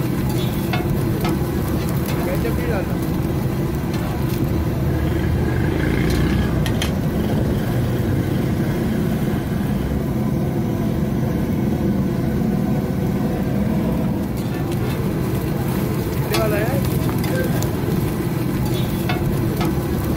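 Egg omelette and buns frying on a flat metal street griddle, with a metal spatula clicking and scraping on the griddle now and then, over a steady low rumble and background voices.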